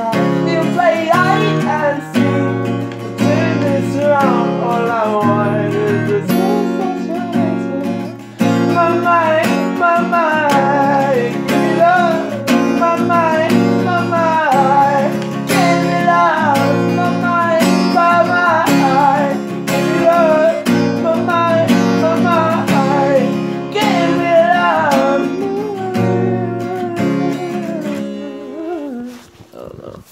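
Music: strummed acoustic guitar with a sung melody over it, fading out near the end.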